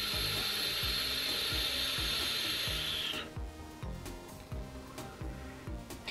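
Draw on a vape mod's ceramic-coil tank with its airflow partly closed: a steady hiss of air and sizzling coil for about three seconds that cuts off suddenly.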